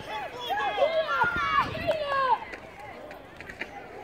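Several high voices shouting at once, overlapping calls during play that are loudest for the first two seconds or so and then die down.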